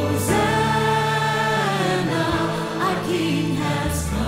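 Live worship music: a female soloist singing long held notes over a choir and orchestra.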